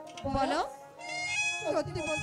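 A woman's drawn-out, wavering cries through a stage microphone, twice, over steady held notes of the accompanying music.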